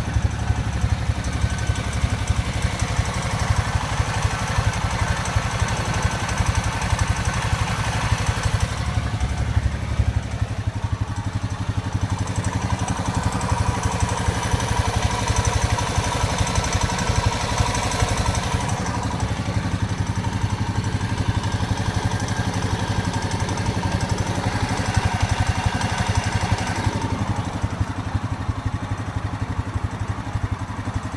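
A brand-new Honda Rancher 420 ATV's single-cylinder four-stroke engine idling steadily, heard close up.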